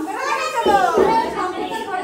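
A group of people's voices at once: overlapping excited talk and high calls from several women, loudest about a second in.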